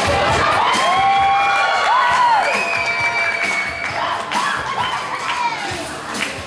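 Dance music played loud over a sound system, with an audience cheering and young voices shouting long, rising and falling calls over it.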